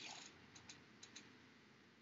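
Near silence: faint hiss with four soft clicks in two quick pairs.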